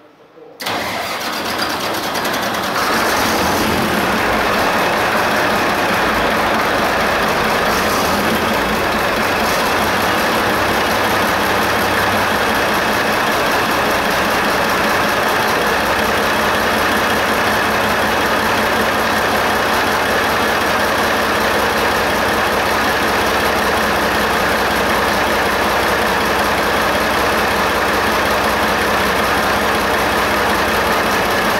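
The Shantui SD16 bulldozer's six-cylinder diesel engine starts about half a second in, builds up over a couple of seconds and settles into loud, steady running. This is the first run after its injection pump was refitted and the timing set.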